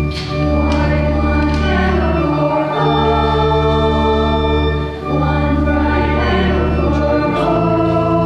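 Slow church hymn: organ holding sustained chords over a deep bass that moves to a new note about every two seconds, with voices singing along.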